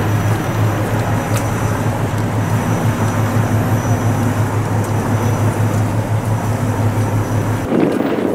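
Steady outdoor city noise: a continuous low hum over a rush of traffic-like noise. It cuts off suddenly just before the end.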